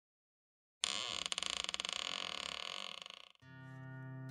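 Hinges of a hard-shell guitar case creaking as the lid is lifted open, one long rasping creak of about two and a half seconds. Near the end a held chord swells in, leading into acoustic guitar music.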